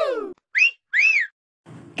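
Whistled tones: a sliding tone that falls away early on, then two short high whistle notes about half a second apart, each rising and then falling in pitch.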